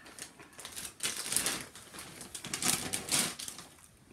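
Plastic popcorn bag crinkling and rustling as it is handled, in two bursts of crackly noise, the first about a second in and the second past the middle.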